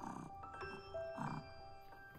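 Gentle background music of single held notes on a mallet instrument. Two brief kitten grunts come in under it, at the start and about a second in.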